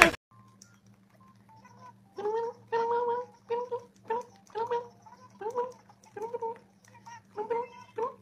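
A young man making a run of short, high vocal noises, about nine of them in a steady rhythm beginning about two seconds in, each sliding up a little in pitch, over a steady low electrical hum.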